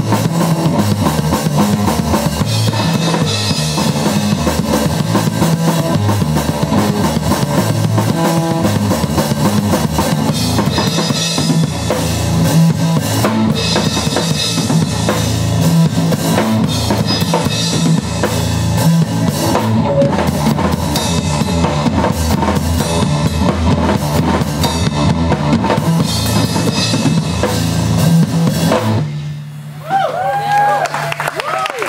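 Live instrumental rock: a drum kit played hard, with bass drum and snare, under an amplified electric guitar. The music stops suddenly about a second before the end.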